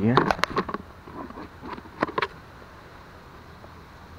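A brief snatch of a man's voice at the start, mixed with clicks and rustling from handling in dry fallen leaves. A couple more sharp clicks and rustles come about two seconds in, then only a faint steady outdoor background.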